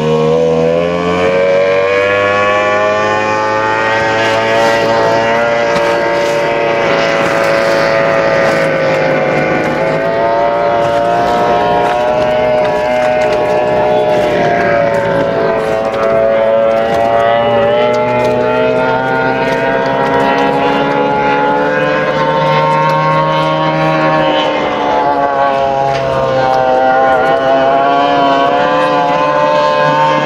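Racing powerboat's outboard engine running hard on the water, a loud, unbroken engine note whose pitch slowly rises and falls with throttle and turns.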